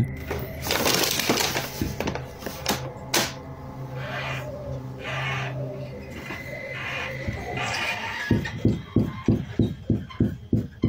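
Unidentified screeching, drawn-out cries from outside a trailer, over a steady low hum. From about eight seconds in, rapid repeated banging on the trailer, a few blows a second.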